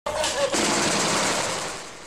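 Automatic gunfire: a dense, loud volley that fades away near the end.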